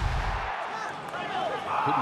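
Electronic intro music that cuts off about half a second in, followed by a male TV commentator's voice over the match broadcast sound.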